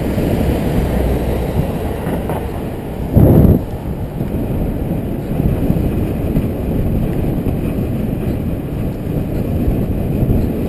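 Wind rushing over a bike-mounted action camera's microphone while riding, a steady low rumble. There is a brief, much louder blast just after three seconds in.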